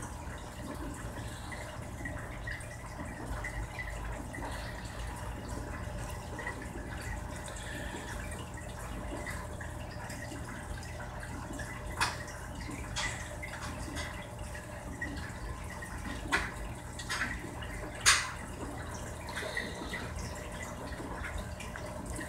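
Steady low hum and faint water trickle of an aquarium filter, with a few short crinkles of the foil face-mask sachet as it is handled; the sharpest crinkle comes about eighteen seconds in.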